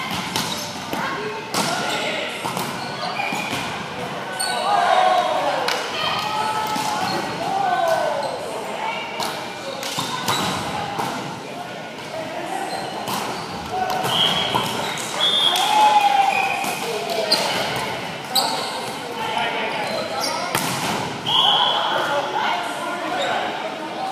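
Indoor volleyball play in a large, echoing gym: sharp thumps of the ball being hit, indistinct shouts and chatter from the players, and a few short high-pitched squeals.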